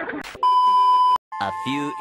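A steady electronic beep, a censor bleep, starting about half a second in and lasting under a second before cutting off sharply. A narrating voice follows.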